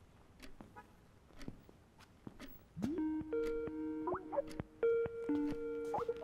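A phone ringtone starts about halfway through: a short melody of held notes, several of them sliding up into pitch, with the phrase beginning again near the end. Before it, only a few faint ticks and knocks.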